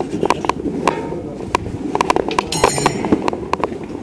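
Footsteps with irregular clicks and taps while walking on a tiled walkway, with a short high chirp or squeak about two and a half seconds in.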